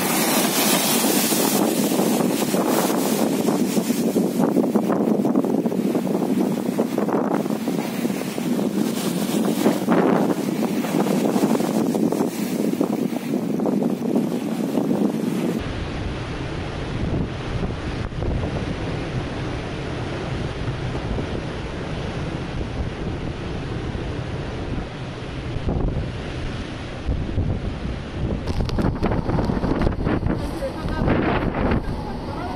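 Storm waves crashing against a steel sheet-pile seawall in cyclone winds, loudest in a burst at the start. About halfway through it cuts to a heavy low rumble of wind buffeting the microphone, with the wind gusting.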